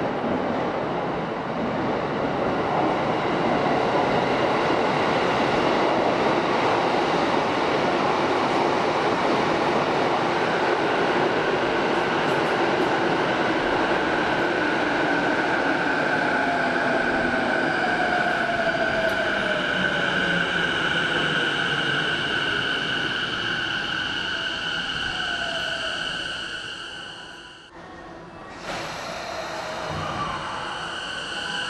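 JR East E233-7000 series electric commuter train pulling into an underground station and slowing to a stop: steady running noise, with a motor whine that falls in pitch as the train slows and a steady high squeal from about a third of the way in. Near the end the sound drops away briefly, then resumes.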